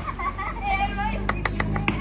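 Street background with faint children's voices over a steady low hum, and a quick run of sharp clicks in the second half.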